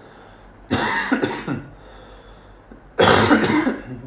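A man coughing twice, with a harsh cough about a second in and another about three seconds in.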